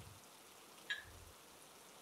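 Near silence, with one faint, very short tick about halfway through.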